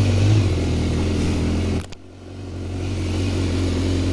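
BMW S1000R's inline-four engine idling steadily. The sound drops out sharply a little before halfway, then builds back up over about a second.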